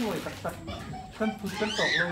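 People's voices talking, with a high, rising-then-falling cry near the end.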